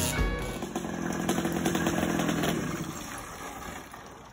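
A dirt bike engine running at a distance, fading away about three seconds in, with background music fading beneath it.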